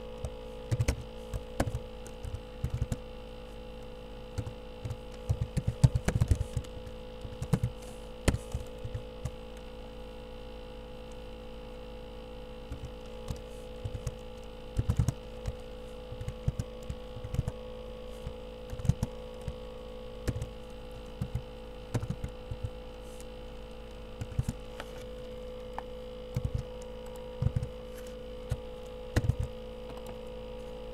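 Irregular clicks of typing on a computer keyboard, coming in bursts with pauses between, over a steady electrical hum.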